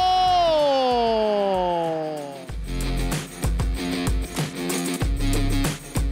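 A football commentator's long drawn-out goal cry, one held note sliding slowly down in pitch and fading about two and a half seconds in. Background music with guitar and a steady beat then takes over.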